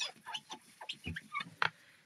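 Tissue rubbed across a glass craft mat: a string of short, irregular squeaks and scrapes, some gliding up or down in pitch.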